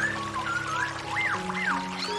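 Soft meditation music with long held low notes and high gliding notes above them, over the steady rush of water pouring down a small stream cascade.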